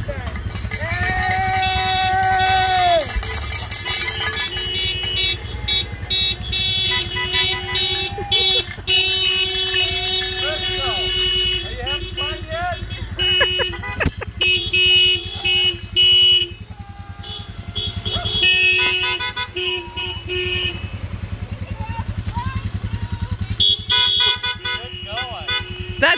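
Car horns honking repeatedly, in long held blasts and short toots, as a line of cars drives slowly past, with people shouting and cheering.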